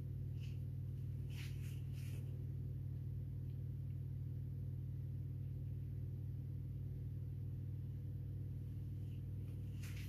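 A steady low hum, with a few faint light clicks in the first two seconds.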